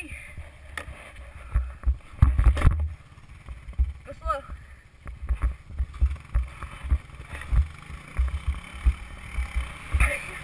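Wind buffeting the helmet-mounted camera's microphone in irregular low rumbles, over the hiss and scrape of a snowboard sliding on packed snow while towed. A brief shout comes about four seconds in.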